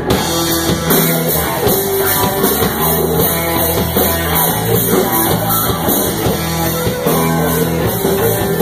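Live rock band playing, with electric guitar and a drum kit at a steady high level.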